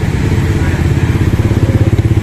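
A small engine running steadily and loudly with a rapid, low, even putter.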